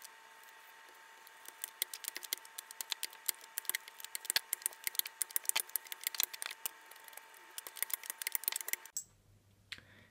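Handled rolling pin rolling out pizza dough on a stone countertop: a quick, irregular run of light clicks and rattles as the pin and its handles turn. It stops suddenly about nine seconds in.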